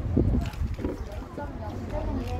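Voices talking in the background over a steady low rumble of wind on the microphone, with a few soft knocks in the first half-second.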